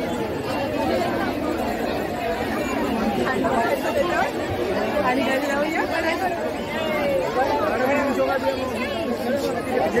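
A dense crowd chattering: many voices talking at once and overlapping, with no single speaker standing out, at a steady level.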